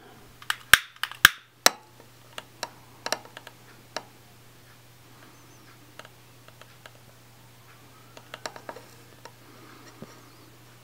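Long-nosed butane utility lighter being worked at a plate of snow: several sharp clicks in the first two seconds, then fainter scattered ticks. A faint steady low hum runs underneath.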